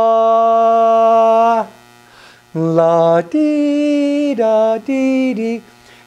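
A man singing on a wordless syllable: one long held note, the final note of a hymn verse being held out, then after a short pause a few shorter notes that step up and down in pitch.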